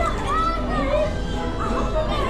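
Children's voices calling and chattering over steady background music.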